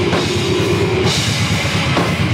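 Deathgrind band playing live and loud: fast, dense drumming with distorted bass and guitar, and a cymbal crash coming in about halfway through.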